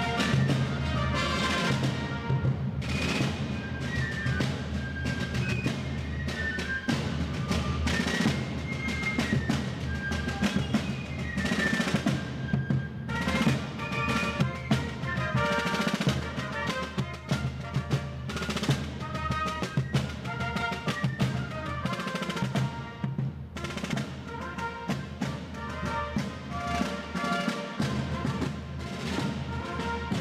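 A colonial-style fife and drum corps playing a march: shrill wooden fifes carry a quick melody over rope-tension snare drums and bass drums.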